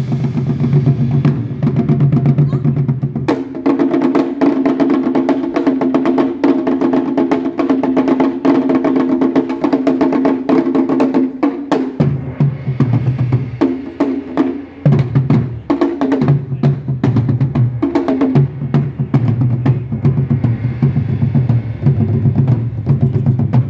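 Japanese taiko drums played by an ensemble: fast, continuous strikes on large rope-tensioned barrel drums and a small tight-headed drum. Under the strikes runs a steady low tone that steps up in pitch about three seconds in and drops back about twelve seconds in.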